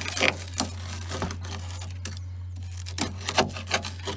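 Screwdriver tip poking and scraping at the rust-rotted steel of a Chrysler Valiant VG's A-pillar and sill, giving a series of short, sharp scrapes and crunches as the rotten metal gives way.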